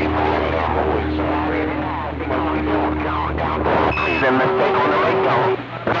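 CB radio receiving skip on channel 28: several distant stations talking over one another, garbled and hard to make out, through the radio's speaker, with a low hum and steady low whistles under the voices. A short high beep sounds about four seconds in.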